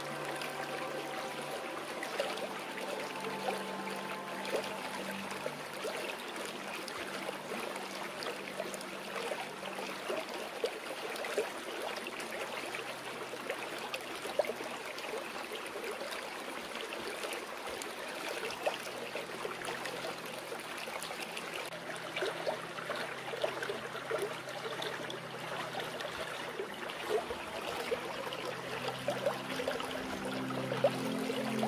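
Steady flowing, trickling stream water, with soft piano tones held faintly underneath.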